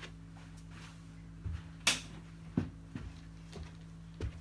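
A sharp click about two seconds in, with a few softer knocks before and after it, over a steady low hum.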